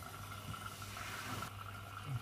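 Zanussi EW800 front-loading washing machine running mid-way through a 40° cotton wash: a steady low hum with a faint steady tone and a hiss, the hiss dropping away about one and a half seconds in.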